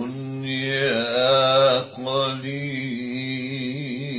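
An elderly man reciting the Quran in the melodic, drawn-out style of tajweed. He holds long wavering notes in two phrases, with a short breath about two seconds in.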